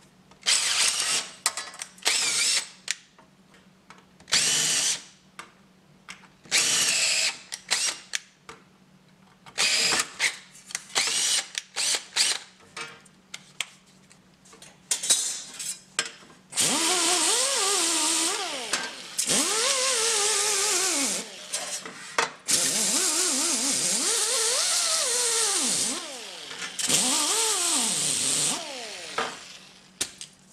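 Cordless drill boring through sheet metal. First comes a string of short trigger bursts, each well under a second. From about halfway there are longer runs of several seconds, with the motor whine rising and falling in pitch as the trigger is eased in and out under load.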